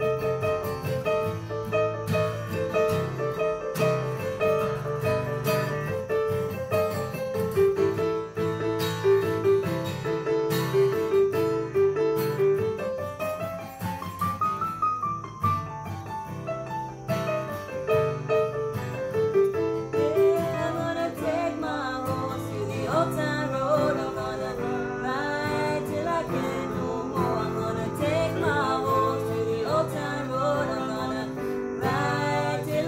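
Instrumental passage on an electronic keyboard playing a repeating piano figure and a strummed acoustic guitar in DADGAD open tuning. A voice starts singing over the instruments about two-thirds of the way through.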